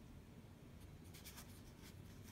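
Faint scratchy strokes of an ink brush dragged over paper, a quick run of them from about a second in, over a low steady background rumble.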